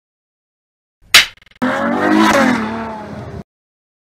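Intro sound effect: a single sharp hit, then a car engine revving for about two seconds, its pitch rising and falling, cut off abruptly.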